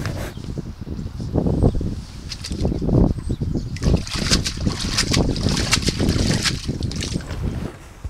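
Wind buffeting the microphone with a gusty low rumble, and in the middle stretch quick scratchy strokes of a stiff deck brush scrubbing the yacht's deck.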